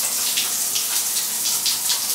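Shower running: a spray of water falling steadily, an even hiss of splashing water.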